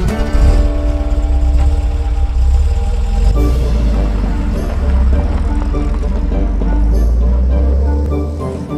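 Steady low rumble of a car engine running, mixed with background music.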